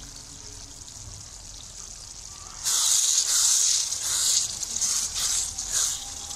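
Keema and kachnar curry simmering in a kadai with a faint steady hiss, then about two and a half seconds in a loud sizzling hiss starts as it is stirred with a wooden spatula, rising and falling with the strokes.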